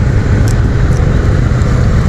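Wind rumbling on the microphone of a camera mounted on a moving bicycle: a loud, steady low roar with no break.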